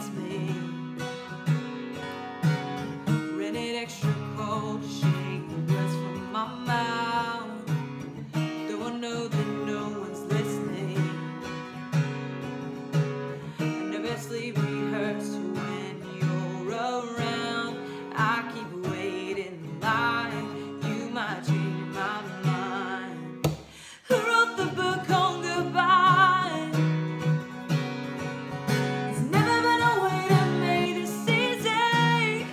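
A woman singing to her own strummed acoustic guitar. About three quarters of the way through the playing drops away for a moment, then the guitar and voice come back in louder.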